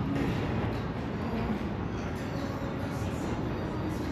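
Steady outdoor ambience of an open-air shopping walkway: a continuous low rumble with faint, indistinct voices of passers-by.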